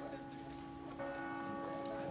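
Faint held musical tones, a sustained chord, with a new note coming in about a second in.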